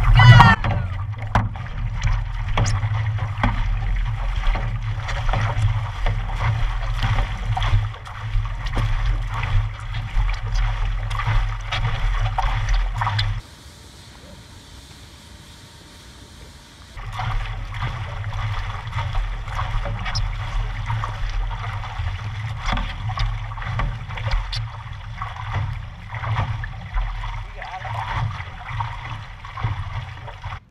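Stand-up paddleboard being paddled hard, heard from a camera on its deck: water splashing and rushing against the board and paddle, over a steady low rumble. Partway through it drops for a few seconds to quiet lapping water, then the splashing and rumble return.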